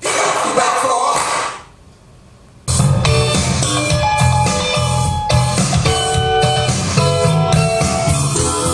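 A pop song with guitar played through JMlab Daline 6 transmission-line floor-standing speakers and picked up in the room. The music drops out for about a second, about one and a half seconds in, and comes back with a full bass line under the guitar.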